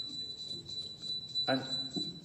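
A steady, high-pitched single tone, held evenly and cutting off at the end; a man's voice comes in over it near the end with the word "And".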